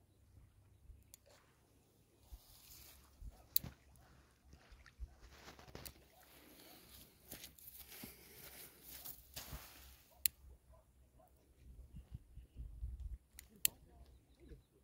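Faint crackling and rustling as the paper bag of an instant BBQ charcoal pack catches fire at its corners, with a few sharp clicks.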